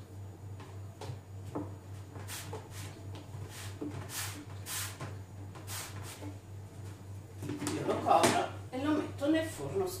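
Hands working a sticky dough ball inside a plastic container: repeated short rustling, slapping strokes about twice a second, with the odd bump of the plastic tub, over a steady low hum. A woman's voice starts speaking near the end.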